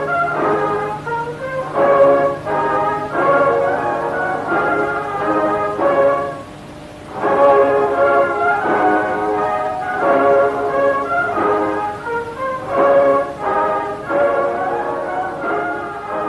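Brass-led orchestral music in short, punchy chordal phrases, breaking off briefly about seven seconds in. A faint steady hum runs underneath through the first half.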